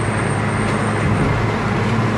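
Steady road and engine rumble heard inside a moving car's cabin, with surrounding traffic. A thin high whine fades out a little after a second in.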